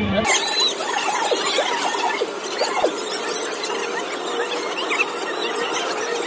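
Many short, overlapping high-pitched squeals at a crowded inflatable slide over a steady noisy din, cutting in suddenly just after the start.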